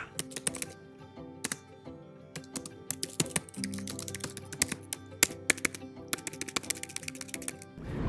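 Computer keyboard typing: quick, irregular key clicks over soft background music with sustained notes.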